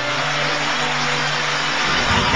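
A swelling whoosh of noise, a sound effect laid over held music tones, building until a deep bass note comes in near the end.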